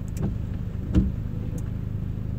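A steady low hum in the background, broken by two soft knocks about a fifth of a second and a second in.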